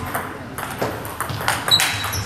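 Table tennis rally: the ball clicking sharply off the bats and the table in quick succession, about three hits a second. A short high squeak comes near the end.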